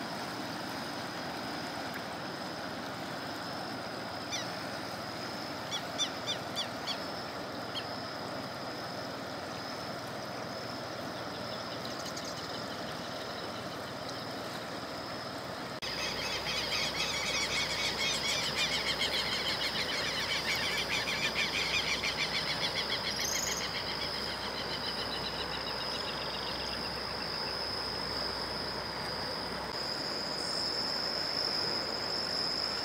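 Outdoor ambience by a flooded river: a steady low rush with a constant high-pitched hum over it. A few short chirps come about four to eight seconds in, and after a cut about halfway a louder, rapidly pulsing trill of calls runs for several seconds.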